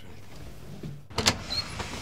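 A door being unlatched and opened: a sharp click of the knob and latch a little over a second in, then a few lighter clicks and knocks as the door swings.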